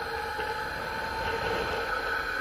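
Wind rushing over an action camera's microphone as the rider swings on a gorge-swing rope, a steady rush with a faint steady whistling tone.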